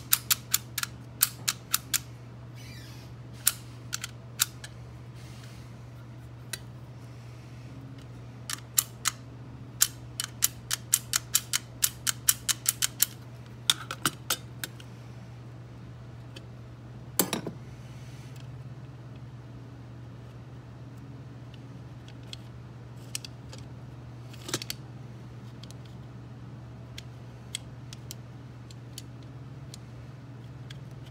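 Sharp metallic clicks from an antique mortise lock being handled, in quick runs of three or four a second as the latch is worked by hand, then a louder knock about seventeen seconds in and a few sparse clinks as the lock case is opened. A steady low hum runs underneath.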